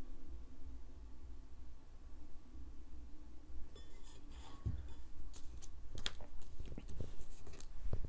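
Small clicks and taps of hand-work: plastic rhinestones being handled and pressed against a stainless steel tumbler. Quiet for the first half, then a scatter of sharp clicks, a few close together near the end, over a low steady hum.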